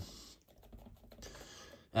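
Clear acrylic stamp block tapped repeatedly onto an ink pad to ink the stamp: a quick run of faint, light clicking taps.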